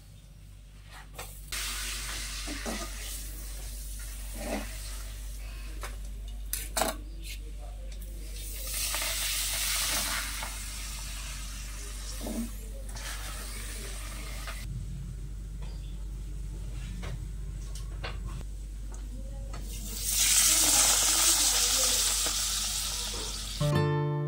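Pooris deep-frying in hot oil in a steel kadai: a steady sizzle with two louder surges of hissing, the biggest near the end. A metal spoon clinks against the pan now and then.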